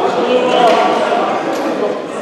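Overlapping voices of players and onlookers, echoing in a large sports hall, with a basketball bouncing on the court.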